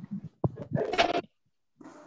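A short animal-like cry, a little over half a second long, coming about a second in over the video call's audio, just after a click.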